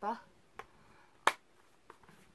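Handling of a plastic DVD case as it is turned over in the hands: one sharp click a little past a second in, with fainter ticks before and after.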